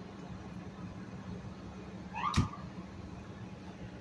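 Steady low hum of idling vehicle engines, broken about two seconds in by one brief, high, pitched sound that ends in a sharp click.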